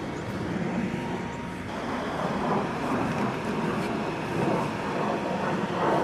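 Steady whir of an inflatable bounce house's electric blower fan running.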